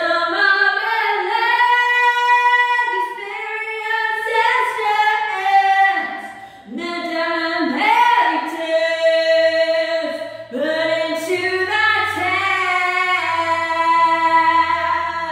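A high voice singing long, held notes without clear words, sliding between pitches, with short breaks every couple of seconds.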